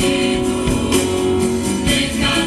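A choir with band accompaniment performing a worship song live: held chords over guitar, with a few sharp percussion beats.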